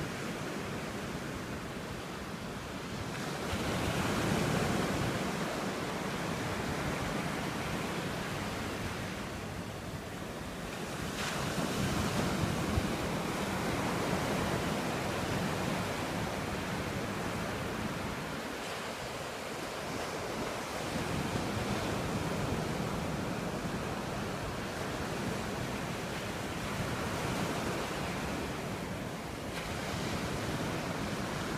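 Gentle surf washing up a flat sandy beach, a steady rush that swells and eases every few seconds as waves run in. Wind buffets the microphone underneath.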